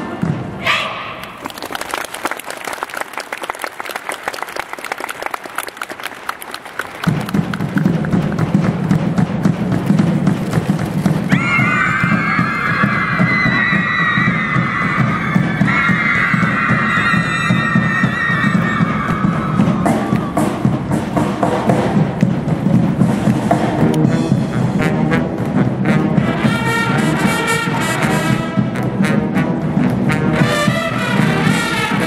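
High-school marching band of brass and drums playing. A held chord cuts off just after the start and is followed by a quieter stretch of rapid clicks. About seven seconds in the full band comes in with a strong low brass part, and a bright brass melody rises over it from about eleven seconds.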